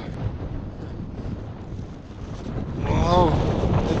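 Wind buffeting the camera microphone on an exposed snowy ridge, a steady low rumble that grows stronger in the second half.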